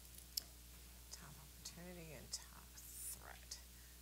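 Near silence: a low steady room hum, a single soft click about a third of a second in, and faint murmured voice sounds around the middle.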